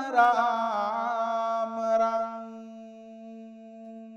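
A Buddhist monk chanting a Pali blessing verse solo. His voice wavers through an ornamented phrase, then holds one long steady note that grows quieter.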